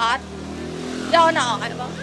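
A motorcycle engine running steadily. A high voice calls out briefly about a second in.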